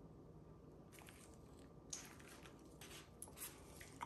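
Near silence: faint handling of a syringe and extension tubing being flushed, with one small click about two seconds in.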